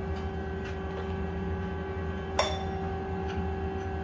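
Steady machine hum of a CNC lathe, holding a few fixed tones, with a single sharp metallic clink about two and a half seconds in that rings briefly.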